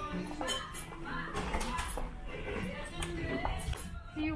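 Indistinct voices of people talking in the background, with faint music and a few light clicks.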